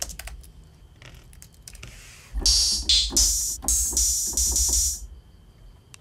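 Open hi-hat sample played as a software instrument from a keyboard: a few soft clicks, then, a bit over two seconds in, about three seconds of repeated bright, hissy hat hits whose pitch shifts from hit to hit as different pitches are tried, over a low bass underneath.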